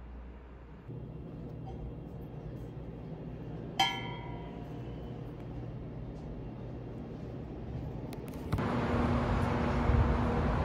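A steady low room hum with a single bright clink about four seconds in, a hard object knocked or set down that rings briefly. From about eight and a half seconds, louder outdoor street ambience with traffic noise takes over.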